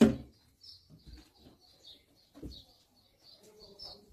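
Small birds chirping in short, repeated calls, with a soft thump right at the start and another about two and a half seconds in.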